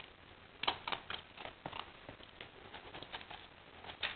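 An English Setter puppy making light, irregular clicks and taps, a quick cluster about half a second in and sparser ones after.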